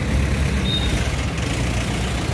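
Steady low rumble of outdoor background noise, with a short high tone about two-thirds of a second in.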